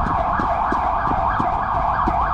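A siren-like wail sweeping rapidly up and down in pitch, about three sweeps a second, loud and steady throughout.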